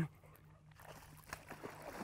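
Faint splashing of a hooked bass thrashing at the water's surface: a few soft splashes that grow a little louder toward the end.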